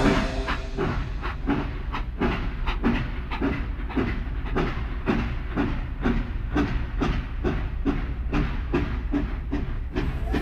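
A quick, even clacking rhythm over a steady low rumble, with music.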